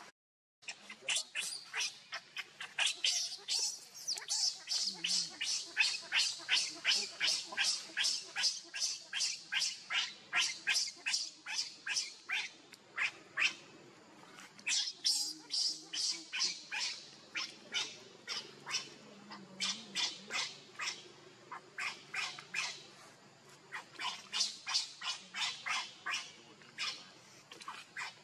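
Infant macaque crying in a rapid string of short, shrill cries, about three a second, with a brief pause midway.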